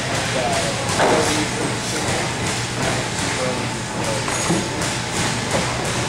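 Muay Thai sparring in a gym ring: thuds of strikes and footwork on the ring canvas over steady room noise and indistinct voices, with one louder thud about a second in.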